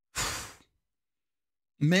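A man's short breathy exhale, a sigh about half a second long, followed by silence; near the end he begins to speak again.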